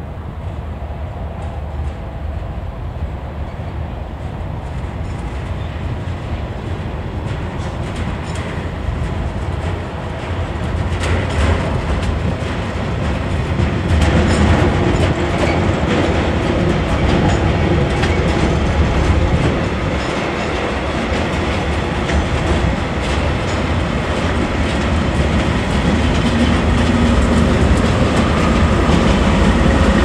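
KiwiRail freight train passing close: wagons loaded with wheelsets and a container clatter over the rail joints over a steady low diesel rumble. It grows louder from about ten seconds in, and is loudest near the end as the diesel locomotive draws level.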